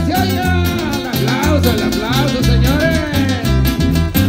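Live tierra caliente dance music from a duet band: a bass line in a steady bouncing pattern under a melody line that slides up and down in pitch.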